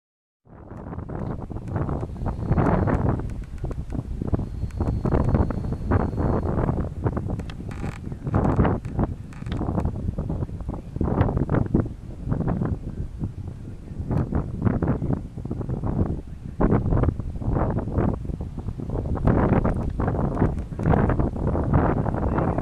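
Wind buffeting the microphone, starting about half a second in and coming and going in gusts as a low rumble.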